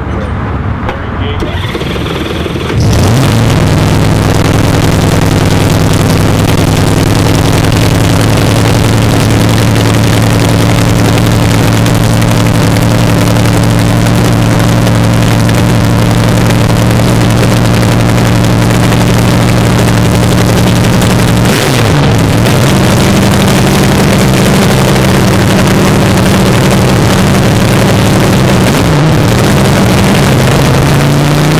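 Nitromethane-fuelled dragster engine cranked and firing up about three seconds in, then idling loudly and steadily. About 21 s in it blips and settles at a higher idle, with another blip near the end.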